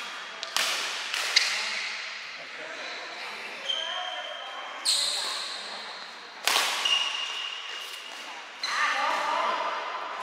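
Badminton rally in a hall: sharp cracks of rackets striking the shuttlecock, about six in all, one every second or two, each echoing in the hall. The loudest hit falls about six and a half seconds in.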